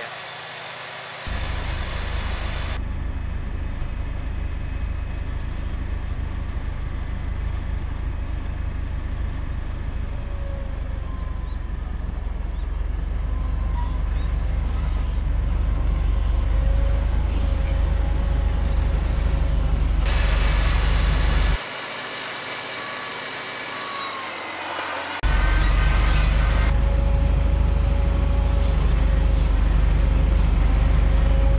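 Farmall Cub tractor's small four-cylinder engine running steadily as the tractor drives, growing louder as it comes closer. The engine sound drops away for a few seconds about three-quarters of the way through, then comes back strong.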